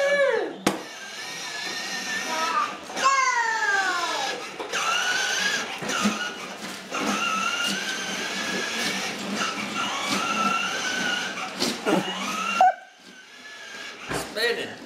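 Plastic ride-on toys rolling on a hardwood floor: a rumbling clatter with a whine that slowly rises and falls in pitch. It stops abruptly near the end.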